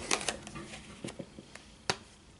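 Tarot cards being handled and laid out on a table: a few light taps and clicks, with one sharper click near the end.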